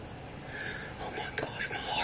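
A man whispering close to the microphone, breathy and unvoiced, in short phrases, as a hunter keeps his voice down in the woods.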